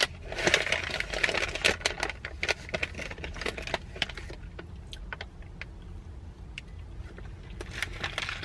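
Crinkling of a plastic snack bag as a hand reaches in and rummages, densest about a second in, followed by scattered sharp crackles and crunchy chewing of snack crackers.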